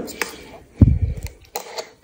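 A steel spoon stirring a thick paste of blended grapes and clinking against a stainless-steel mixer-grinder jar: a few sharp clicks, with one louder knock about a second in.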